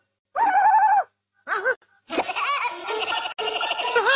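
High-pitched, wavering laughter and squeals from a baby in short bursts: one long burst about a third of a second in, a brief one around a second and a half, then a longer run from about two seconds on.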